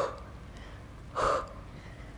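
A woman's short, forceful breaths out through the mouth, twice, about a second and a half apart, one with each twist and leg switch of a Pilates criss-cross.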